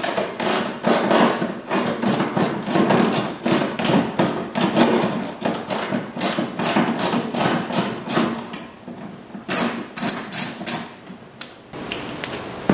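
Ratchet with an 8 mm socket clicking in rapid runs of ticks while an 8 mm bolt is backed out, with short pauses about eight and a half seconds in and again near the end.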